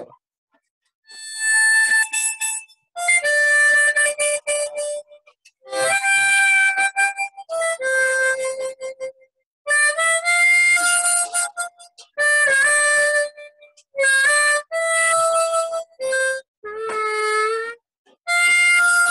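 Harmonica played in short phrases of held notes and chords with brief breaks between them, starting about a second in, with a few notes bent downward.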